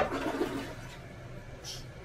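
Toilet being flushed: a sharp clack of the tank handle, then water rushing into the bowl, loudest for the first half second and then dying down.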